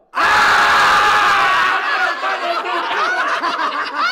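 Men laughing loudly and shrieking. It starts suddenly after a brief silence, with a long high cry in the first couple of seconds, then breaks into choppier bursts of laughter.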